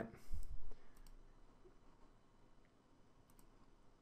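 A low, dull thump in the first second, then a few faint computer mouse clicks over quiet room tone.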